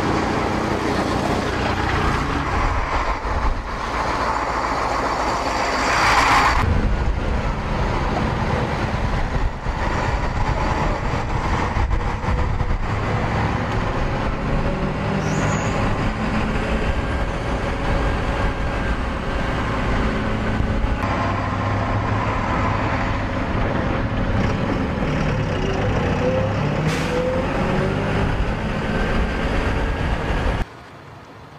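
Military armoured patrol vehicles and trucks on the move in a convoy: a steady engine drone with road noise, and a louder rush about six seconds in.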